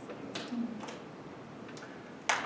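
Quiet room tone with a few faint, short clicks in the first second.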